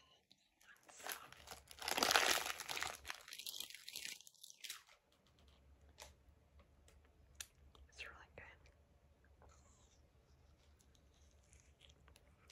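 Paper ice-pop wrapper crinkling and rustling for the first five seconds, loudest about two seconds in. After that it goes quiet, with scattered small clicks and mouth sounds as the pop is handled.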